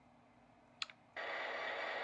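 A short tap-like click, then a steady locomotive running sound starts abruptly about a second in and holds steady: the Bachmann E-Z App's sound effect, played through the iPod's speaker as the locomotive's control screen opens.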